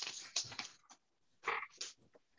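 Faint rustle of sheets of paper being lifted and moved across a felt mat, in short bursts: a cluster at the start and two more about a second and a half in.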